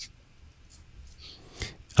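A quiet pause between two speakers: low room tone with a few faint breath and mouth sounds, a short breath just before the next speaker begins.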